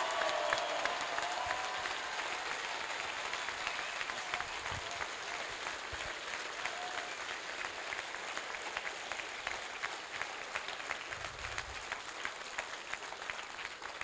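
Large audience applauding steadily, a dense patter of hand claps welcoming a speaker to the stage, easing slightly toward the end.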